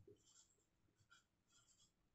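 A handful of short, faint strokes of a marker pen writing on a whiteboard, otherwise near silence.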